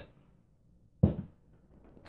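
A single short thump about a second in, fading quickly: a glass mason jar being set down on a workbench.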